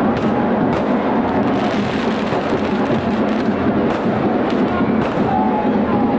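Firecrackers going off in several sharp bangs over a loud, dense crowd din.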